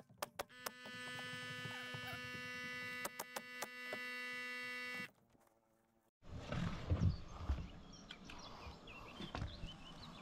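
Pneumatic coil roofing nailer firing into asphalt shingles, a few sharp cracks near the start and a quick run of three around three seconds in, over a steady hum that cuts off abruptly about five seconds in. After a short pause, rustling and low knocks.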